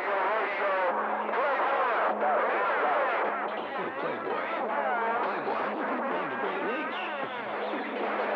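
Garbled, overlapping voices coming through a radio receiver's speaker, too jumbled to make out, over a steady low hum.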